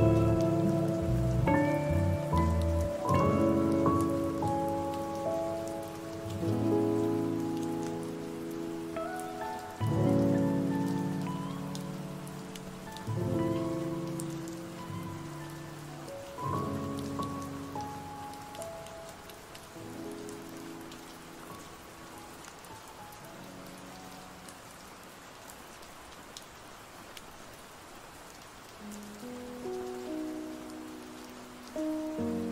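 Mellow lofi track whose soft chords fade out over the first twenty seconds, over a steady bed of rain. Only the rain remains until the next lofi track starts near the end.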